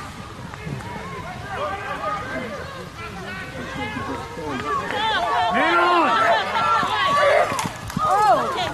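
Overlapping shouts and calls from lacrosse players and sideline spectators, too far off to make out the words, growing louder in the second half.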